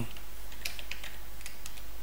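Typing on a computer keyboard: a string of light, irregular key clicks over a low steady hum.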